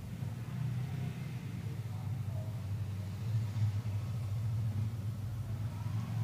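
A steady low rumble, a little louder from about half a second in.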